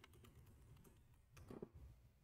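Faint typing on a computer keyboard: a short run of light keystrokes as a command is typed, a little louder around a second and a half in.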